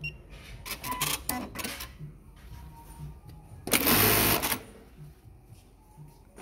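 Juki LK-1900BN computerized bartacking machine: a few sharp clicks about a second in as the work clamp comes down, then, about four seconds in, a single short run of high-speed stitching, under a second long, as it sews one bartack through denim.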